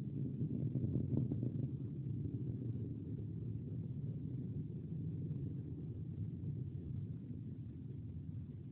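Distant rumble of a Taurus XL rocket's solid-fuel motor, heard through a phone microphone as a steady low rumble.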